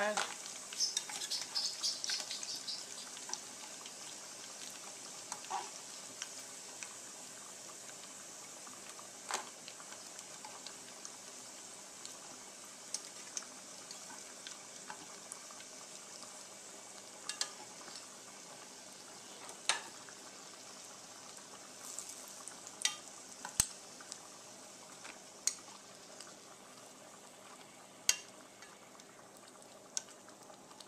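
Sweet potato fries deep-frying in a small pot of oil: a steady sizzle, busiest in the first few seconds. Now and then there are sharp clicks of metal tongs against the pot as the fries are lifted out.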